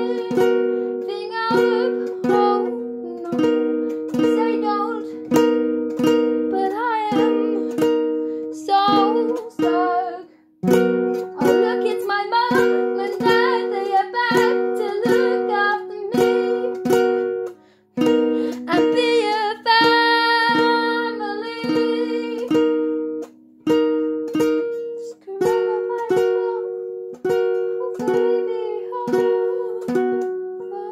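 Acoustic guitar strummed in chords, about two strokes a second, with a young woman singing phrases over it. The playing breaks off briefly twice, about a third and about three fifths of the way through.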